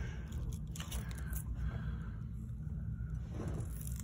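Parrot biting and tearing at a head of raw cabbage: faint, irregular small crunches and leaf-tearing crackles.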